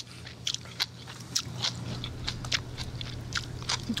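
Close-miked chewing: a mouth crunching crisp food, heard as irregular sharp crunches and clicks, over a steady low hum.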